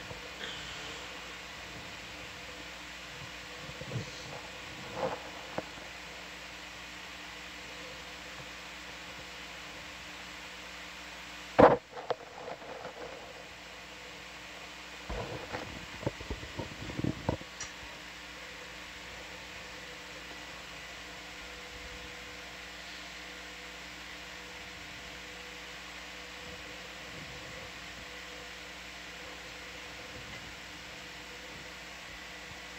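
Steady hiss and low electrical hum of an ROV control-room audio feed, broken by scattered clicks and knocks. The loudest is a single sharp knock about twelve seconds in, followed a few seconds later by a cluster of smaller knocks.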